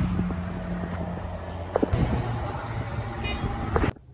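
Steady low hum of a car engine with outdoor traffic noise and a few faint knocks; it cuts off abruptly just before the end.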